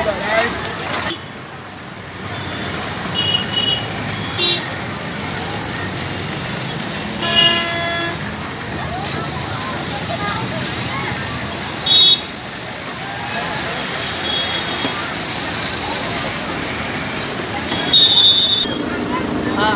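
Road traffic around a city bus, with vehicle horns: a short toot about seven seconds in and a louder, higher-pitched honk about twelve seconds in, with a few faint beeps earlier.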